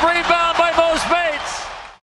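A male basketball play-by-play commentator's voice calling the play, fading out near the end.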